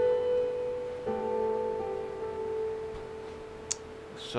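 Electronic keyboard chords: one chord rings on, a new chord is struck about a second in and left to ring out, fading slowly. A single short click comes near the end.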